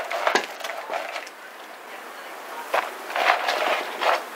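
A tangle of plastic-coated Christmas string lights and their cardboard box being handled and shaken, giving a crackling rustle with a few sharp clicks, the strongest near the start and about three seconds in.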